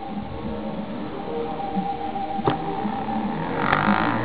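Bedini pulse motor starting up: the coil's switching pulses make a tonal hum and buzz that grows louder as the magnet wheel gathers speed, with one sharp click about two and a half seconds in.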